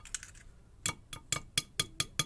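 Small metallic clicks from the key and removed plug of a Mottura Champions C39 euro cylinder lock being handled: a few faint ticks at first, then about six sharp clicks in quick succession in the second half, some with a brief ring.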